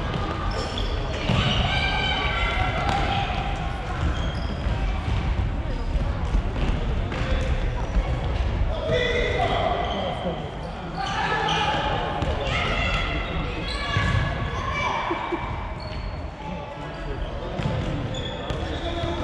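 Players and a coach shouting, echoing in a large sports hall, with the thuds of a futsal ball being kicked and bouncing on the wooden floor.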